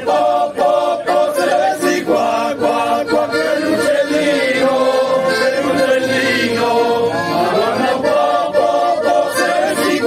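A group of men singing a traditional folk song together in chorus, accompanied by two piano accordions.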